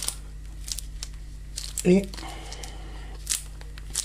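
A few short, crisp crinkling rustles as latex-gloved hands knead two-part epoxy putty and pick stuck bits of plastic film off it, over a low steady hum.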